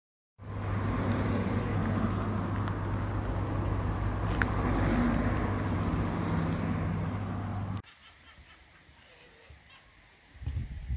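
Honda Civic Type R FN2's 2.0-litre four-cylinder engine idling with a steady low hum, cutting off abruptly a couple of seconds before the end.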